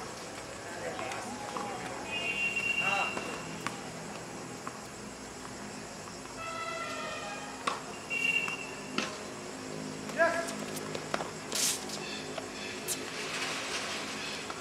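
Tennis ball struck by rackets in a rally: a few sharp pocks a second or more apart, with indistinct voices calling out between shots.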